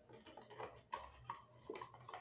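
Faint light taps and clicks of a tarot deck being picked up and handled on a tabletop, a few small knocks between about one and two seconds in.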